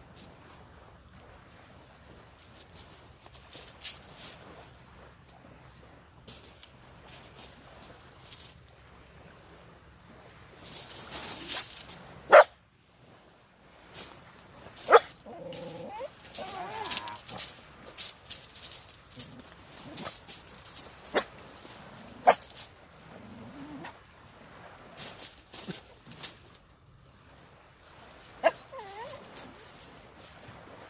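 A dog whining and whimpering, with a few short, sharp barks.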